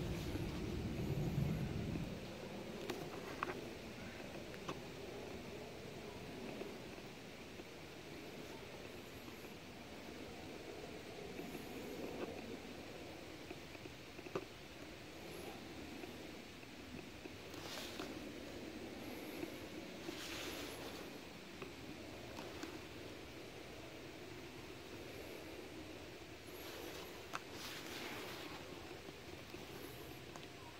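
Faint riding noise from a RadMini electric fat-tire bike rolling along an asphalt path, with wind on the phone microphone. A low rumble is louder for the first two seconds, and a few light clicks and rustles come later.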